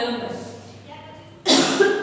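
A woman coughing twice in quick succession into her hand, sudden and loud, about a second and a half in, after the fading end of her speech.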